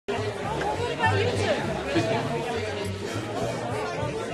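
Crowd chatter with music playing under it, in a busy room.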